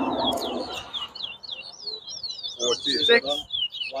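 Caged towa-towa finches singing in competition, a continuous run of quick whistled notes that slide up and down. Voices murmur underneath in the first second, and a voice speaks briefly near the end.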